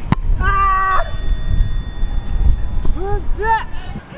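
A soccer ball struck hard on a powerful long-range shot, a sharp thump at the start, with a long cry from a player. About a second in comes a high ringing tone, and near the end two short rising-and-falling shouts.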